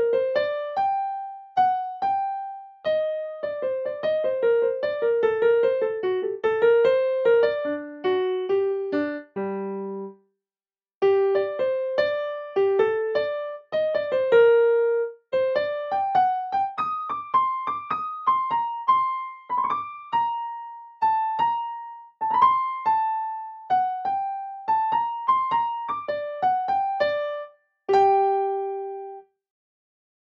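Digital piano playing a single-line melody note by note, with no chords. After a short pause about ten seconds in, the same melody returns with its note lengths changed to a swing rhythm, ending on one held note near the end.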